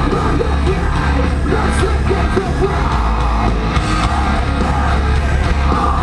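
Loud live rock band playing on stage, with a vocalist yelling and singing over heavy, steady bass and drums, recorded from the front of the crowd.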